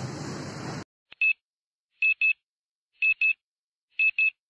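Steady background noise that cuts off suddenly under a second in, followed by short, high electronic beeps: one, then two quick pairs about a second apart, an edited-in sound effect.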